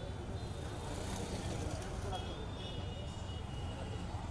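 Street ambience: a steady low traffic rumble under the background voices of a crowd, with a faint high-pitched tone from about two seconds in.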